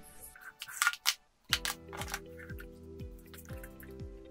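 Water dripping and splashing in a plastic bucket as LED light bars are submerged in it during the first second, followed about a second and a half in by background music with a steady beat.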